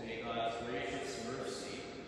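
Only speech: a man talking into a microphone.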